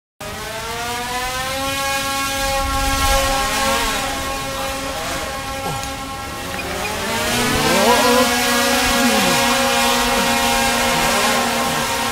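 Large multi-rotor drone's propellers whirring in a steady hum. Several rotor pitches slide up and down, and the sound grows louder about eight seconds in as the drone lifts a man off the ground.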